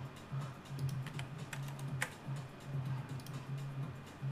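Scattered clicks of a computer keyboard and mouse, the sharpest about two seconds in, over low background music.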